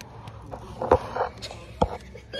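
Two sharp knocks about a second apart, with a short rustle after the first, as the rope rigging and wooden ship structure are handled close to the microphone.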